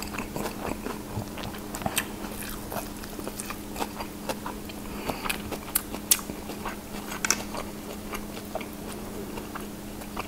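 Close-miked chewing of a shrimp and lettuce fresh spring roll: crisp lettuce crunching and wet mouth clicks, coming irregularly. A steady low hum runs underneath.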